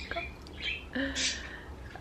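Small pet birds chirping: a few short chirps and one longer whistled note about a second in.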